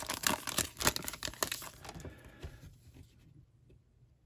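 Foil wrapper of a Donruss Optic basketball card pack being torn open and crinkled: a quick run of crackles that thins out about two seconds in.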